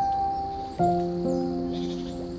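Slow, gentle piano music: notes and chords struck every half second to a second and left to ring and fade, over a faint steady hiss of running water.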